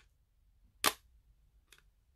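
The magnetic lid of a plastic ink pad case clicking against the pad: one sharp click about a second in, then a much fainter one near the end.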